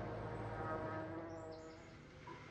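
Faint bird chirps, a few short high calls about a second and a half in, over a soft drone of steady held tones that fade toward the end.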